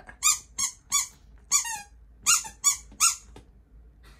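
Husky puppy whining: about seven short, high-pitched whimpers in quick succession, each dropping in pitch at its end, stopping a little over three seconds in.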